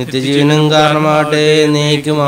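A man's voice chanting a prayer of the Mass, holding one long, nearly level note.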